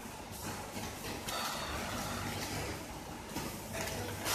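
A plastic sheet rustling as hands handle it, over a steady low hum of kitchen machinery.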